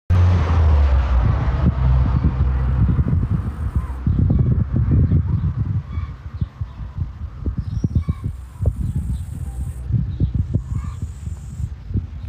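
Low rumble with irregular thumps on a phone's microphone, loud for the first five seconds or so and then weaker.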